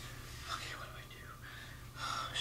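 A faint whispered voice over a low steady hum.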